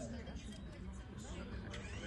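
Indistinct voices of people talking, steady throughout.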